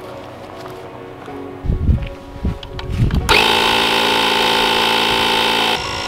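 A few dull thumps, then a small motorised tool starts up and runs steadily at one pitch for about two and a half seconds before cutting off sharply.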